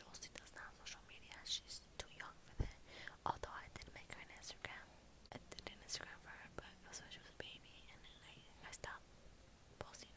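A young woman whispering close to the microphone, soft breathy words broken by short sharp clicks.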